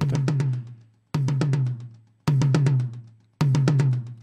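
A recorded tom-tom drum track played back in a short loop: four repeats about a second apart, each a quick run of hits over a deep ringing drum tone that dies away. The tom is being played through an equalizer cut near 500 Hz, taking out the boxy, cardboard-like tone of the drum's shell resonance.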